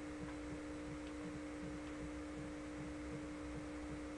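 A steady, even hum at one low pitch with a faint higher tone above it, over light background hiss.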